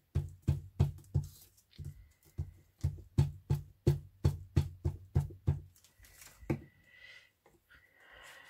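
A plastic glue bottle knocked repeatedly against the craft table: about twenty quick knocks, three or four a second, stopping about five and a half seconds in, with one more knock a second later.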